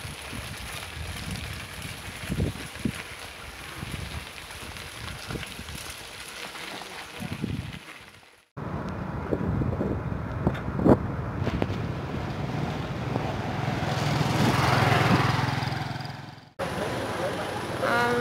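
Riding a rattly rental bicycle: wind on the microphone with scattered knocks and clatter from the bike over the road. In the second half a motor vehicle's low steady hum swells and then cuts off suddenly.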